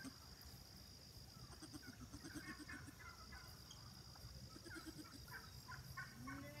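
Faint outdoor quiet of a livestock field: a steady high-pitched buzz, with scattered faint calls from farm animals.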